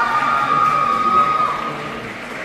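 A loud horn blast of several tones sounding together, held steady and cutting off about one and a half seconds in.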